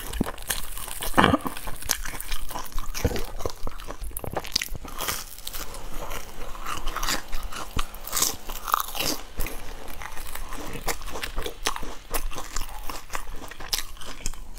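A person biting into and chewing a breadcrumb-coated fried bun: a dense, irregular run of crisp crunching clicks.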